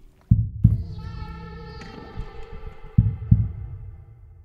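Heartbeat sound effect in an edited soundtrack: two double-thumps, deep and loud, one near the start and one about three seconds in. Between them a sustained ringing synth tone slowly fades out.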